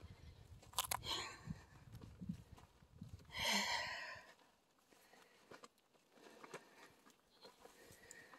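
Soft footsteps crunching on dry grass and dirt for the first few seconds, with a brief louder burst of noise about three and a half seconds in, then near quiet.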